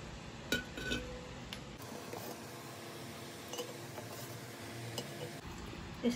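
Aluminium drink cans clinking against each other and knocking down on a wooden desk as they are taken out of a cardboard box. A few light knocks fall in the first second and a half, with fainter ticks later.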